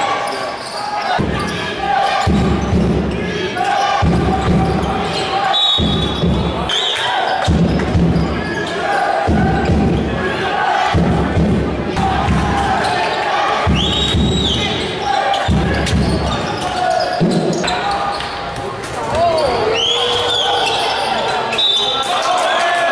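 Basketball game sound in a sports hall: a crowd's noise rising and falling in a steady rhythm about every second and a half, with several short, high sneaker squeaks on the court.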